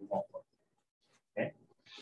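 Short, choppy fragments of a man's speech, a few clipped syllables with silent gaps between them, cut up by a video call's audio processing.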